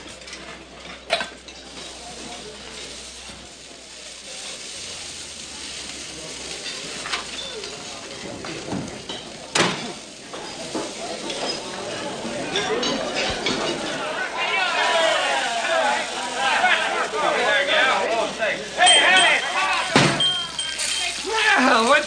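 Kitchen sounds: dishes clinking in a washtub with a few sharp knocks, over food sizzling in a frying pan. From about halfway on, several indistinct voices come in and grow louder.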